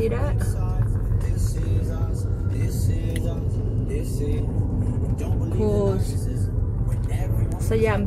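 Steady low rumble of a car's engine and tyres heard from inside the cabin while driving, under a woman's intermittent talking.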